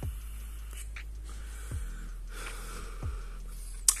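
Someone taking a mouth-to-lung puff on a Justfog MyFit pod vape with one airflow hole closed: a faint airy hiss of the draw and breath over a low steady hum, with a sharp click near the end.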